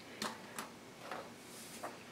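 A few faint, short clicks of tabletop handling as a glue pen is set aside, then a light rustle of a sheet of paper sliding in near the end.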